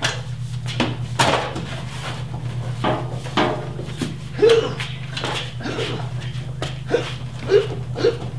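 Jeep Cherokee XJ body being shoved sideways by hand to center the front axle with the track bar removed: irregular knocks and creaks as the body rocks on its suspension, with a few short vocal sounds, over a steady low hum.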